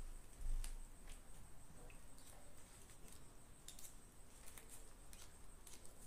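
Faint, scattered small clicks and rustles of stiff crinoline mesh and thread being handled as its edge is hand-stitched with needle and thread.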